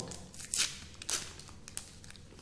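The sealed wrapper of a nasal test swab being peeled open by hand: crinkling and tearing of the packaging in a few short crackles, the loudest about half a second in.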